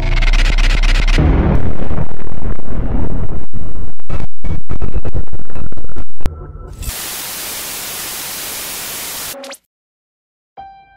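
Video-intro sound effects: a deep low boom under music, then loud distorted glitch noise that stutters and breaks off several times. It gives way to a steady hiss of TV static, which cuts off abruptly just before the end.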